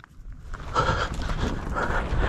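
Footsteps breaking into a run through dry scrub, boots crunching on stones and brushing through dry brush. The sound starts suddenly about half a second in and stays loud with an uneven rhythm of steps.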